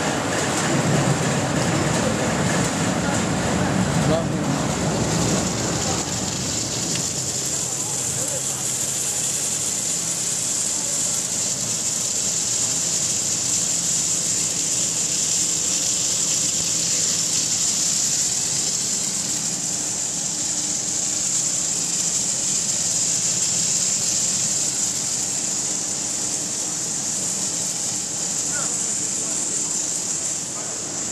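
Corn curl extrusion line machinery running steadily, a constant high-pitched hiss or whine over a machine hum, with a heavier low rumble in the first six seconds or so.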